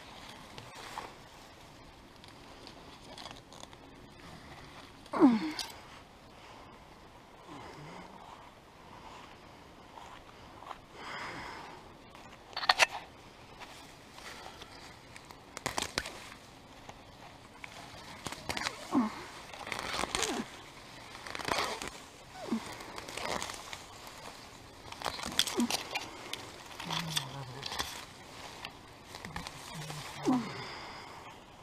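Weeds being pulled by hand from soft, rain-wet garden soil: irregular rustling, crackling and tearing of leaves and roots, sparse at first and coming in quicker clusters in the second half.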